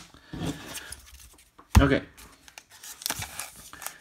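Trading cards and a foil card-pack wrapper being handled: light rustling and crinkling, with one sharp thump just before two seconds in.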